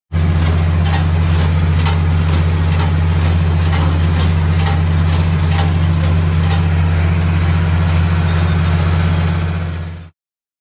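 Tractor engine running steadily while driving a New Holland small square baler, with a sharp click about once a second from the baler; the sound fades out near the end.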